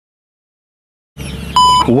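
Dead silence for about a second, then faint outdoor background comes in and a short, high electronic beep sounds for about a third of a second, just before a man's voice starts calling out.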